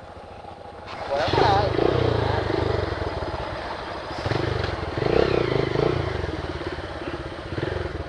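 Motorcycle engines running close by, rising and surging in bursts from about a second in as the bikes are revved to move off.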